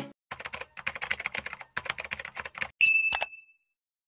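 Sound effect of rapid computer-keyboard typing, a couple of seconds of quick irregular clicks, followed by a single bright bell ding that rings briefly and fades.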